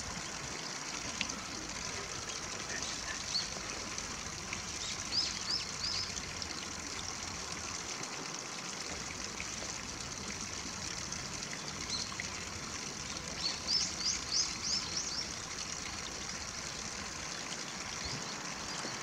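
Shallow stream water trickling steadily over stones, with a small bird's quick, high chirps in two short runs, about five seconds in and again near fourteen seconds.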